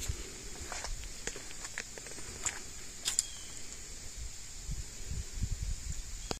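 Faint movement and handling noise: scattered light clicks and taps over a low rumble, with a steady faint high-pitched hiss throughout.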